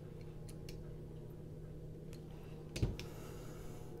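A few faint, sharp clicks from a small folding knife and a bit driver being handled as the knife's screws are set, with one louder click about three quarters of the way through, over a faint steady hum.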